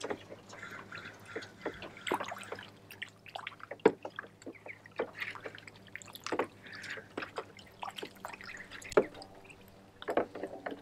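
Muscovy ducks dabbling and dipping their bills and heads into a shallow plastic kiddie pool while hunting feeder fish: irregular splashes, drips and slaps of water. The two sharpest splashes come a little before four seconds in and near the end.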